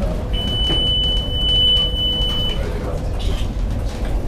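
A steady high-pitched electronic beep held for about two seconds, over the constant low rumble of a moving cable car cabin.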